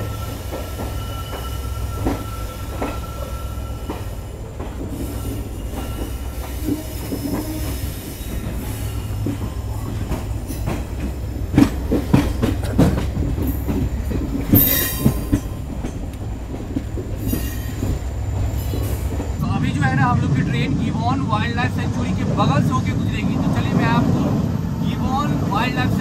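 Passenger train pulling out of a station, heard from the open coach door: a steady low running rumble, with the wheels knocking sharply over rail joints and points about halfway through. Past two-thirds of the way in, the sound changes to a louder rush of wind and running noise.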